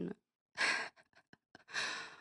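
A woman breathing in a pause between phrases: two audible breaths, a short one about half a second in and a longer one near the end, with a few faint small clicks between them.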